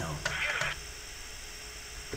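A short burst of speech in the first half, then only a low steady background hum.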